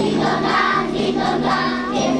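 A group of children singing a song together in chorus.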